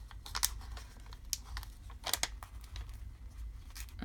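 Paper sticker sheet being handled and stickers peeled from their backing: irregular short crackles and crinkles of paper, the sharpest a couple of seconds in.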